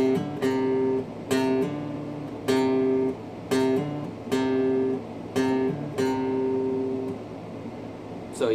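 Steel-string acoustic guitar playing an intro riff: about a dozen short strums, with the higher strings ringing steadily while a bass note on the A string moves between frets, hammered on and plucked.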